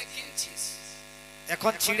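Steady electrical hum from a stage PA system, with a man's voice on the microphone starting again about one and a half seconds in.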